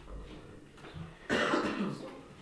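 A single loud cough a little over a second in, lasting about half a second.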